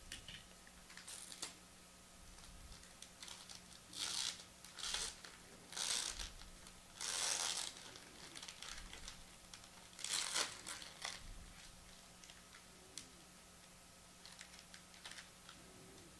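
Foil trading-card pack wrapper crinkling as it is torn and pulled open by hand, in several short rustles with small crackles between; the longest rustle comes about seven seconds in.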